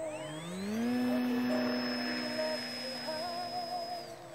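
A model airplane's motor and propeller throttling up: the pitch rises over about a second, then holds steady at high power until it drops away at the end. Music with singing plays underneath.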